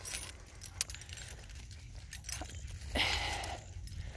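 Faint small metallic clinks and jingles, scattered irregularly, over a steady low rumble on the microphone while walking; a short breath-like rush of noise about three seconds in.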